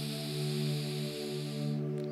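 A slow breath out through the left nostril during alternate-nostril breathing (nadi shodhana), lasting nearly two seconds and stopping just before the end. It sits over steady ambient drone music with long held tones.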